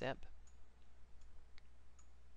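A few faint computer mouse clicks, scattered and irregular, over a low steady hum.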